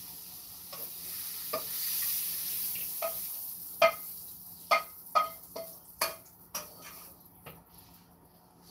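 Stir-fried vegetables being scraped out of a hot nonstick wok, with oil sizzling faintly at first, then fading. In the second half a hard utensil knocks against the wok about eight times, each knock ringing briefly, as the last bits are shaken off.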